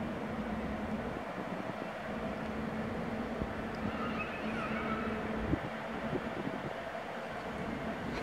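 Electric locomotive-hauled train approaching in the distance: a steady low hum and rumble over a background hiss, with a couple of faint knocks about five and a half seconds in.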